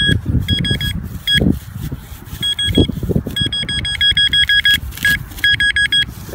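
Metal detector sounding a high, steady-pitched tone in repeated beeps and quick runs of beeps as its coil is swept back and forth over a buried target, the signal that the operator reads as a quarter. A low rumble runs underneath.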